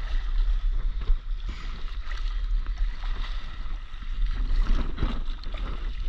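Water splashing and swirling from paddle strokes as a stand-up paddleboard is spun in a pivot turn, over a steady low rumble of wind on the microphone.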